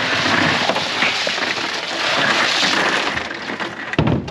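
Ice poured from a plastic basket into a fish box: a continuous clattering rattle of many small ice pieces that tapers off near the end.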